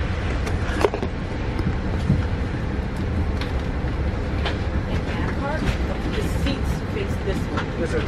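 Passenger train car interior: a steady low rumble from the train, with scattered small clicks and rattles.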